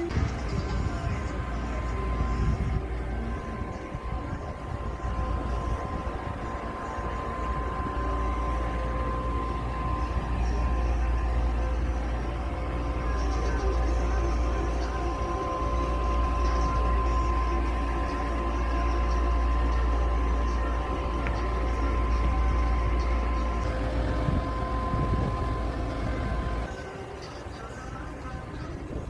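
Outdoor ambience with wind rumbling on a phone microphone, with a steady high tone and some music and voices behind; the rumble drops away near the end.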